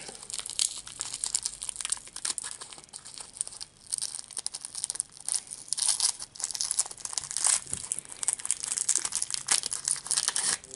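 A lollipop wrapper crinkling and tearing as it is twisted and pulled off the candy by hand, in irregular crackles that grow busier in the second half.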